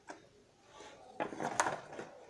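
A short run of rapid mechanical clicks and rattles, like a ratchet or a latch being worked, lasting under a second and starting a little past the middle.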